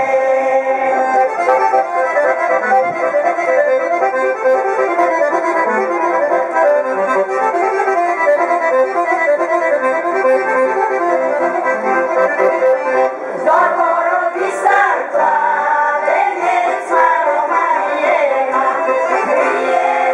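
Accordion playing a Bulgarian folk tune in steady chords; about two thirds of the way through, the women's voices come in singing over it.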